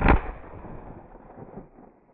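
A single shotgun shot, followed by an echoing tail that fades over nearly two seconds.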